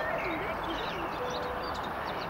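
Small birds chirping and twittering in many short, quick calls over a dense, steady background murmur.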